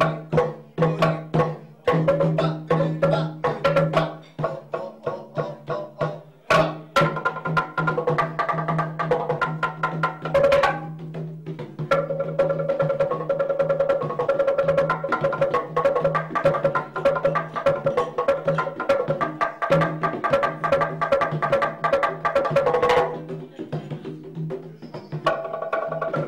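Wooden xylophone played with two mallets: quick, sharp wooden notes in a driving rhythm over a steady low tone. About halfway through, the playing turns into a fast roll of rapidly repeated notes, which stops shortly before the end.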